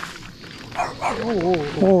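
A dog makes a brief rough bark or growl about a second in, with a man's drawn-out 'oh, oh' exclamations as it comes up to him.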